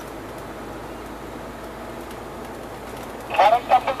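Steady engine and road noise heard inside a moving truck's cab.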